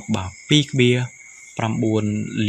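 A voice narrating in short phrases, with two steady high-pitched tones humming underneath throughout.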